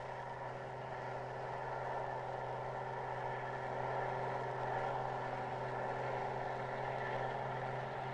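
Tractor engine running steadily, a constant even hum that holds the same pitch throughout.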